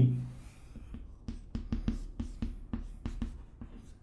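Chalk writing on a chalkboard: a run of short taps and scrapes as characters are written, starting about a second in and stopping near the end.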